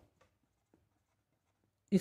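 Faint scratching of a pen writing on paper, a few light strokes.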